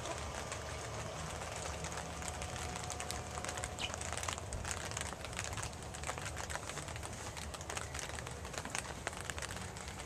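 Steady low background hum with many small scattered clicks and crackles, the kind of handling noise a hand-held camera picks up while it is carried about.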